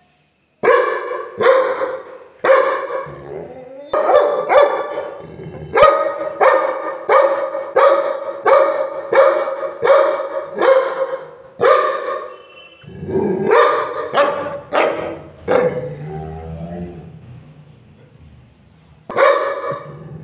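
A large Labrador-type dog barking over and over: a steady run of loud, pitched barks about two a second, then a shorter cluster after a brief pause. A few seconds of lull follow, and a single bark comes near the end.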